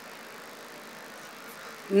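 A pause in the talk filled only by steady, faint background hiss and outdoor ambience, with the speaker's voice coming back at the very end.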